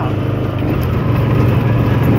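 Side-by-side utility vehicle's engine running steadily while the vehicle is under way, a continuous low drone heard from the seat.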